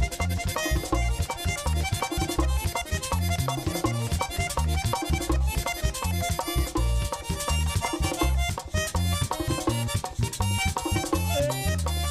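Merengue típico band playing live without vocals: a button accordion leads with fast runs over a pulsing bass guitar and driving percussion.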